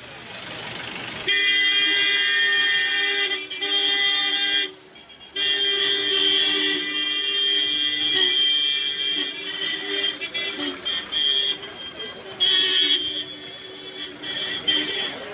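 Vehicle horn sounding a long, steady two-note blare, held almost without pause with two short breaks early on and choppier toots near the end.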